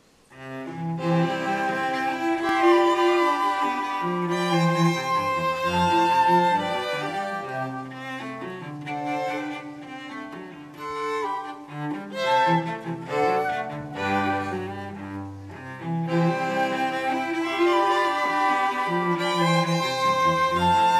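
A live string quartet of violins and cello starts playing about half a second in and plays on without a break, the cello carrying a moving bass line under the violins.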